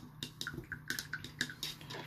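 A rapid, irregular series of faint clicks and ticks, about a dozen, from fingers handling a plastic miniature on its painting handle, over a low steady hum.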